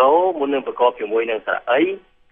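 A lecturer talking in Khmer in a steady stream of speech.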